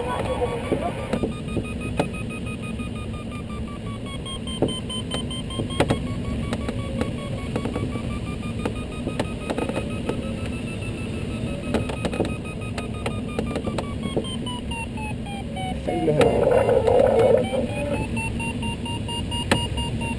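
Glider audio variometer beeping rapidly, its pitch slowly rising and falling with the changing lift as the glider circles in a thermal. Steady cockpit airflow noise runs underneath, with scattered light clicks. About sixteen seconds in comes a louder burst of noise lasting a couple of seconds.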